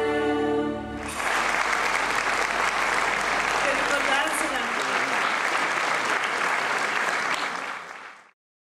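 Orchestra and choir holding a final chord that breaks off about a second in, followed by sustained audience applause that fades near the end.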